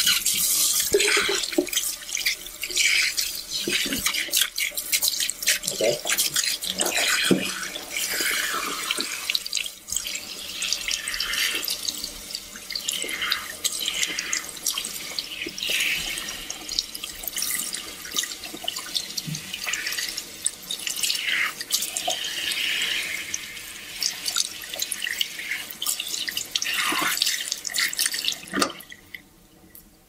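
Water running from a tap into a barber's wash sink and splashing irregularly as shampoo is rinsed out. The water stops about a second before the end.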